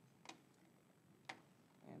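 Near silence with two faint, short clicks about a second apart.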